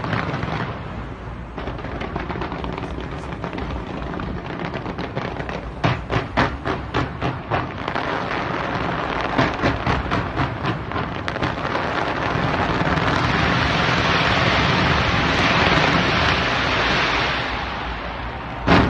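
Fireworks display: a run of sharp bangs going off in quick succession, several a second. Then a dense, steady wash of crackle builds and is loudest in the last few seconds.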